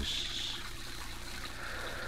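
Steady trickle and splash of a garden fountain, a radio-drama sound effect, under the hiss and low hum of an old transcription recording.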